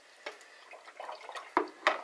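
Toothbrush stirring soapy water in a plastic bowl: faint swishes and light ticks, then two sharp knocks in quick succession near the end.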